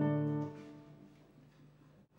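A classical guitar chord ringing, then cut off about half a second in, leaving quiet room tone.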